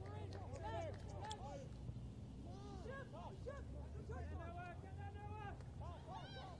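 Faint, distant shouts and calls from players on a soccer pitch: many short rising-and-falling cries, over a steady low rumble of open-air field ambience.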